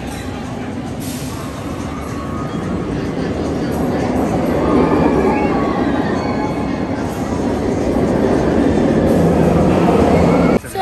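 A steel roller coaster's train running along its track, a loud rumbling roar that swells over the first few seconds and stays loud to the end.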